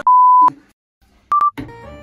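Electronic beep tones: a steady beep of about half a second, then silence, then a shorter, slightly higher beep about a second later.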